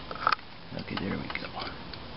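A few light metal clicks from a C-clamp's screw and sliding handle as it is turned to compress a valve spring through a wooden fork, the sharpest click near the start.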